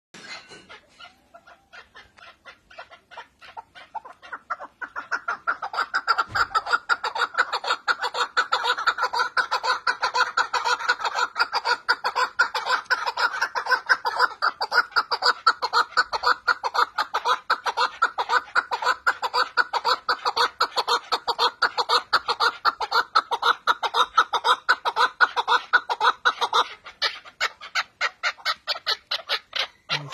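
Male chukar partridge calling: a rapid, unbroken series of short repeated notes, several a second, that starts softly and comes up to full strength about five seconds in. Near the end the series breaks into shorter groups.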